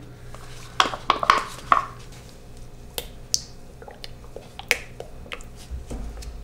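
Scattered light clicks and taps of a silicone spatula and small cup against plastic pitchers while colorant is stirred into cold process soap batter.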